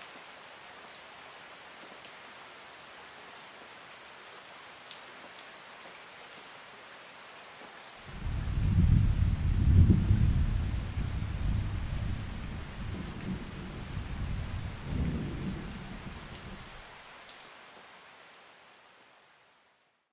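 Steady rain hiss. About eight seconds in a deep rumble of thunder sets in suddenly, swells twice and rolls away, as the sound fades out to silence at the end.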